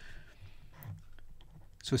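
Faint, scattered clicks and taps of a stylus writing on a tablet screen.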